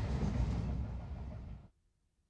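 Steady rumble of a passenger train running, heard from inside the carriage; it dips and then cuts off suddenly just under two seconds in.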